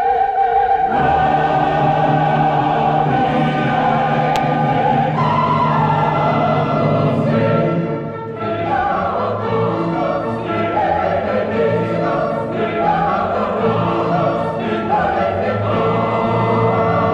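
Choir and orchestra performing a Classical-era Mass. Long held chords give way to moving vocal lines about five seconds in.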